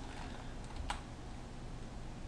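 A computer keyboard key pressed once, a single sharp click about a second in (the Delete key), over a faint steady hiss.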